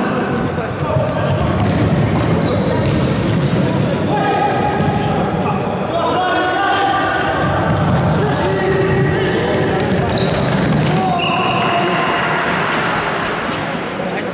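Sounds of an indoor futsal game: players shouting and calling out to one another, over the thuds of the ball being kicked and bouncing on the wooden hall floor.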